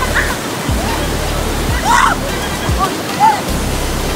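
Whitewater river rapids rushing loudly and steadily, with several short shouts or yelps from people riding inner tubes through them, the loudest about two seconds in.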